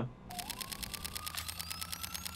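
Edited-in transition sound effect: a rapid, even run of sharp clicks, about ten a second, over a whine that rises in pitch, building up to the title card.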